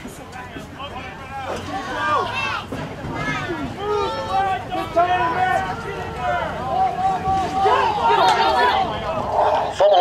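A sideline crowd of parents and children shouting and cheering over one another during a play, the yelling growing louder from about halfway through and loudest near the end.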